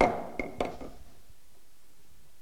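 Auctioneer's gavel striking once, a sharp knock that rings briefly, with two lighter taps about half a second in. It closes the bidding on the lot after it has been called for the third time.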